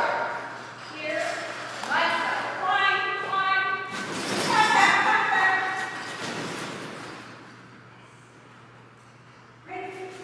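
A person's voice calling out several short words, echoing in a large hall, loudest about four to five seconds in and fading away after about seven seconds.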